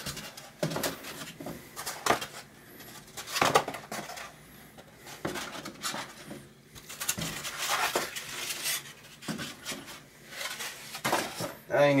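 Molded-pulp cardboard egg flats being handled and stood upright in a plastic storage tote: irregular scraping, rustling and light knocks of cardboard against cardboard and against the tub's plastic walls.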